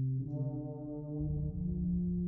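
Wind ensemble music: low brass holding sustained chords. A brighter brass note enters just after the start, and the lowest note steps up near the end.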